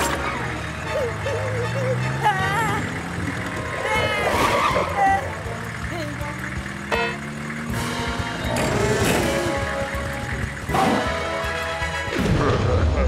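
Cartoon soundtrack: an animated van's engine sound effect revving with a slowly rising pitch, under background music and short bursts of nonsense character vocalizing.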